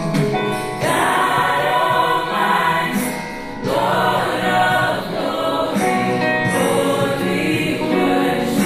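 A gospel choir singing in harmony, held sung phrases with a short break about three seconds in.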